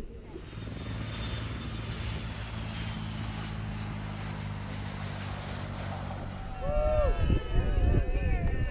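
The four turbofan engines of a BAe 146 jet airliner run steadily as it rolls along a gravel runway. Near the end this gives way suddenly to a louder crowd cheering and shouting.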